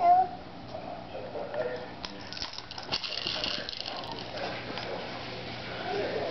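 A small child's short squeal at the very start, then quieter babbling-like vocal sounds and a stretch of rustling in the middle.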